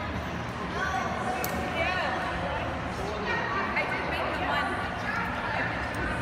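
Indistinct voices talking in a large, echoing hall, with one sharp click about one and a half seconds in.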